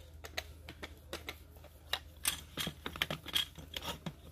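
Irregular light clicks and taps of a long screwdriver working the stock nut inside a Remington Model 11-48 shotgun's buttstock as it is threaded and tightened, coming thicker and louder from about halfway in.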